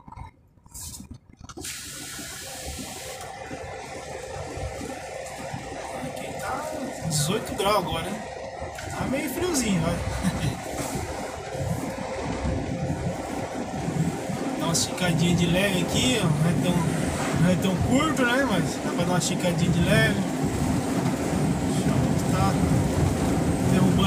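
Noise inside a truck cab: engine and road noise that starts after a brief near-silent moment and builds steadily louder, with an indistinct voice over it from several seconds in.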